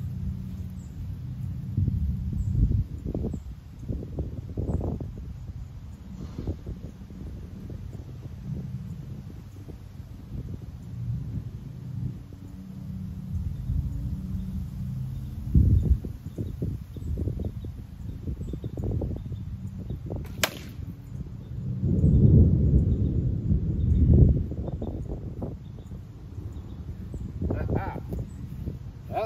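A heavy broadhead-tipped arrow strikes and drives through a three-quarter-inch plywood target with a single sharp crack about two-thirds of the way in. A low rumble of wind on the microphone runs underneath, swelling shortly after the hit.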